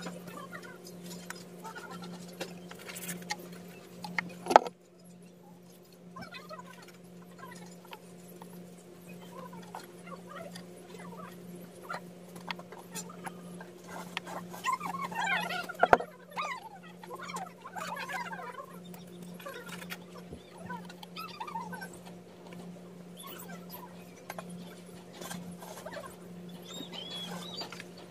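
Rough volcanic rocks being handled and pressed into wet cement: light scraping and rubbing of stone, with two sharp stone knocks about 4 and 16 seconds in, over a steady low hum.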